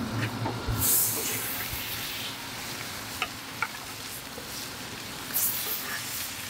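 Seasoned sheepshead fillets sizzling in butter on a Blackstone flat-top griddle at very high heat. The sizzle surges about a second in and again near the end as the fillets go onto the hot steel, with a few light taps of the spatula in between.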